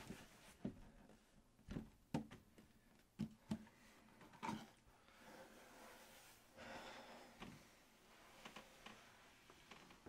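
Near silence: room tone with a few faint, short knocks scattered through the first half and a faint rushing sound about seven seconds in.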